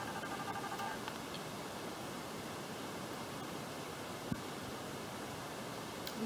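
Steady hiss of background noise with no speech. A faint pitched tone stops about a second in, and a single soft click comes a little over four seconds in.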